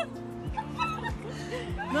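Background music with a steady beat, mixed with high, excited voices.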